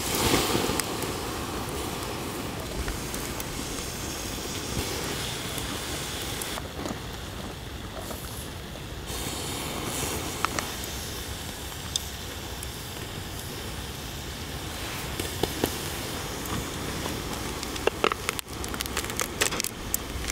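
Shellfish sizzling on a wire grill over a charcoal fire: a steady hiss with scattered small pops. Several sharper clicks and knocks come near the end as shells are handled on the grill.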